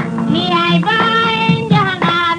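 A Senegalese song: a solo voice sings long held notes that glide between pitches, over a steady, rhythmic low accompaniment.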